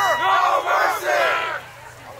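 A rugby team yelling together in a loud group cheer, many voices shouting at once in long held cries, breaking off about one and a half seconds in.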